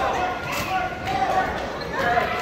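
Spectators talking and calling out in a large gym hall, with a dull thud about half a second in.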